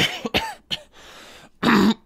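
A person coughing in a short fit and clearing their throat, with one loud cough near the end.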